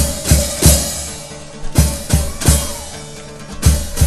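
Murga percussion of bass drum (bombo), snare and cymbals struck together in loud accented hits, each cymbal crash ringing on. The hits come in groups of three with a short pause between groups, then a single hit near the end.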